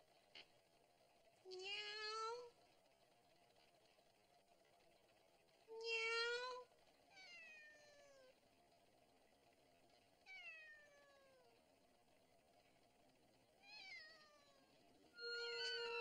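A cat meowing five times, a few seconds apart: two long meows rising in pitch, then three fainter ones falling in pitch.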